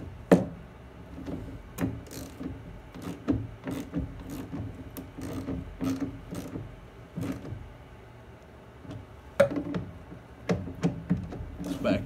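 Scattered clicks and knocks of plastic intake parts and a hose being handled and seated in an engine bay, with a sharp click about a third of a second in and another about nine and a half seconds in, over a faint steady hum.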